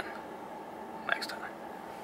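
A man's brief soft whisper about a second in, over a steady low hum.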